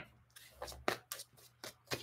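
Tarot deck being shuffled by hand: a few soft, short card flicks and rustles.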